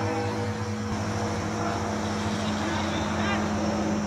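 A steady low engine-like drone that holds one pitch throughout, with faint voices underneath.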